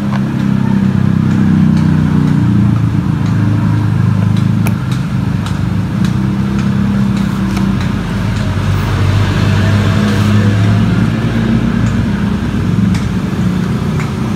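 Honda Beat FI scooter's single-cylinder engine idling steadily after its ECU reset, with a few light clicks over it.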